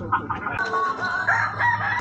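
A rooster crowing, starting about half a second in.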